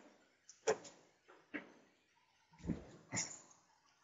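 Faint, scattered handling noises: a few short knocks and clicks, with a longer, duller rustle near the end.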